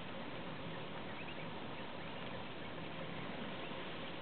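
Steady outdoor background hiss with a faint steady hum, and a few faint, short high chirps from birds a little over a second in.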